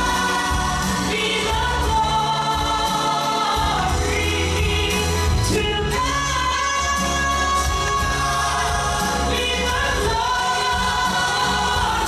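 Live gospel song: a woman's amplified lead vocal holding long notes and sliding between them over band accompaniment with a moving bass line.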